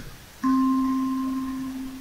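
A single vibraphone bar, C4 (middle C), struck once about half a second in and left ringing. It is a clear tone that slowly dies away, and a fainter overtone two octaves above it fades out first.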